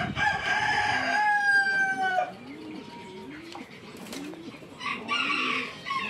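A rooster crowing once, one long call of about two seconds. It is followed by a run of low, repeated bird calls about twice a second, with a shorter, higher call from another bird near the end.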